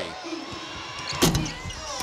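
A basketball hits the rim on a free throw with one sharp clang a little past a second in, and the shot rims out. A steady arena crowd noise runs underneath.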